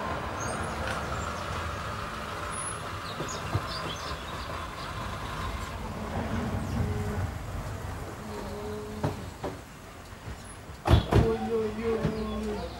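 Renault Scénic minivan rolling slowly up a dirt driveway with its engine running at low speed, the rumble easing as it comes to a stop. Near the end come two loud knocks of its doors.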